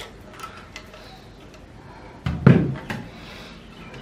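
A heavy stone slab set down on a wooden table a little over two seconds in: one dull thump, then faint handling noise as it is settled in place.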